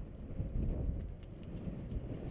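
Wind buffeting the microphone of a camera riding on a moving bicycle, an uneven low rumble.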